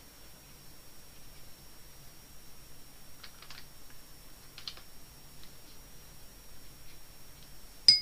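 Quiet room with a faint steady high whine; a few light clicks of painting gear against the watercolour paint set about three and four and a half seconds in, then a sharp clink with a brief ring near the end.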